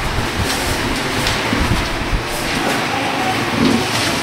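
Steady rumbling room noise, with scattered soft rustles and knocks as papers are handled at the desks.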